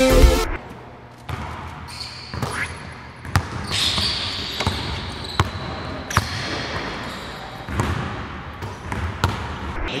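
A basketball bounced on a hardwood gym floor, several single knocks at irregular intervals of about a second, each echoing in the empty hall.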